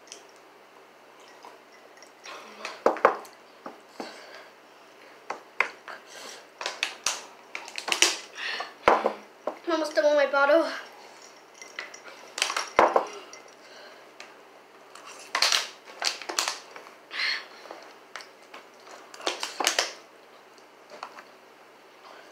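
A fork clicking and scraping against black plastic bowls in a scattered series of short, sharp knocks as noodles are picked up and eaten. A girl's wavering voice sounds briefly about ten seconds in.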